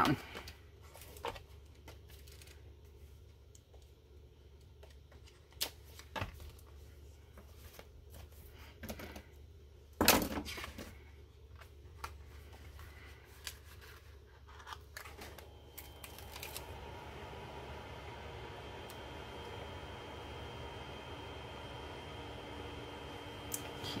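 Sticker-book pages and paper planner stickers being handled: scattered soft rustles and clicks, with one sharper, louder rustle about ten seconds in. A steady hum with a faint high whine comes in about two thirds of the way through.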